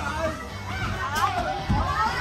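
Several children's voices calling out and chattering over one another, with music playing underneath.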